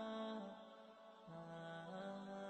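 Quiet background music of long, sustained notes that step slowly from one pitch to the next, with a lower note entering about halfway through.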